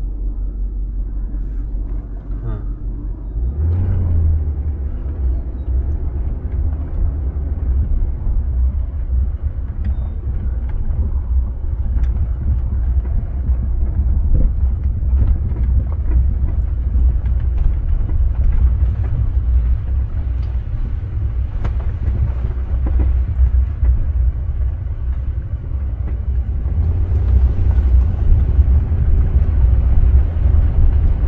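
A 2004 Range Rover HSE driving slowly along a rough dirt trail, heard as a steady low rumble of engine and tyres on the bumpy dirt. The rumble gets louder about four seconds in and again near the end.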